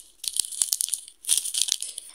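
Plastic snack-bar wrappers and instant-coffee sachets crinkling as a hand gathers them up, in two runs of short crackles.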